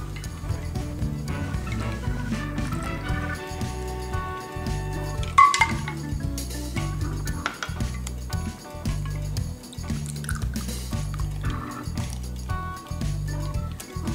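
Background music with a steady beat, over a stainless-steel cocktail shaker and glass shot glasses clinking as a chilled drink is poured from the shaker. One sharp clink about five seconds in is the loudest sound.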